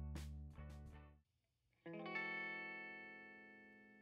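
Background music of plucked notes and chords that stop a little after a second in. After a short gap, one last chord rings out and slowly fades away.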